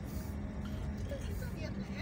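Steady low engine and road rumble inside a car's cabin while driving slowly.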